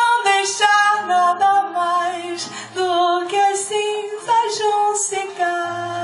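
A woman singing a slow, sustained melody live into a microphone, accompanied by a nylon-string classical guitar playing low bass notes and chords.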